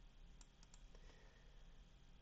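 Near silence with a few faint clicks of a computer mouse a little way in.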